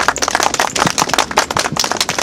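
Audience clapping: many quick hand claps, each one distinct.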